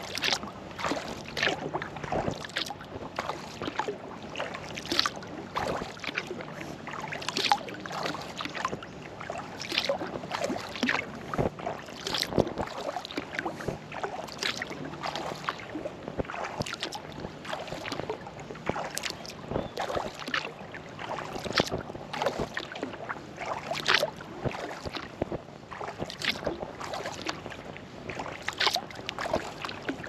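Sea kayak paddle dipping into calm water in a steady rhythm, one splashy stroke about every second and a quarter.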